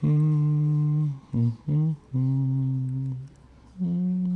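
A man humming a tune to himself: long held notes with a few short ones between them, the last note pitched higher.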